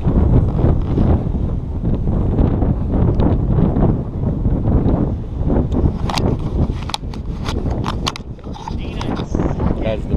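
Wind buffeting the camera microphone with a heavy low rumble, broken by a quick run of sharp clicks or taps about six to eight seconds in.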